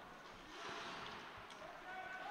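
Faint rink sound from live ice hockey play: skate blades scraping on the ice, swelling about half a second in, with a light click late on.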